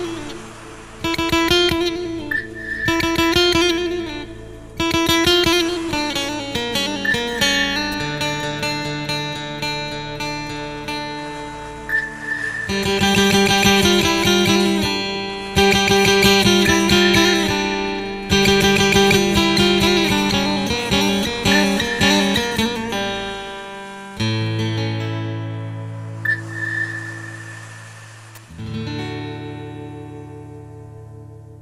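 Instrumental sevdah music played by an ensemble, with a steady rhythmic accompaniment under a melody; a little before the end it changes to long held low chords.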